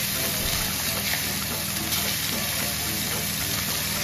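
Chicken breast halves frying in butter in a skillet, a steady sizzle of hot fat.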